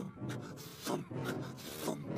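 A cartoon character imitating a creature's strange noise with a few scratchy, rasping strokes, one about a second in and another near the end.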